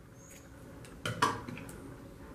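Metal scissors snipping through crochet yarn and being handled: a few faint clicks, with one louder short clatter about a second in.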